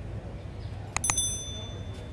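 Sound effect of a YouTube subscribe-button animation: a couple of sharp mouse clicks about a second in, then a bright notification-bell ding that rings out and fades over just under a second.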